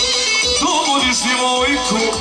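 Kolo dance music with a singer: a sung melody with wavering, ornamented pitch comes in about half a second in, over held instrument tones and a steady low beat.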